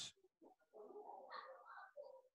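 Near silence, with a faint low sound through the second half.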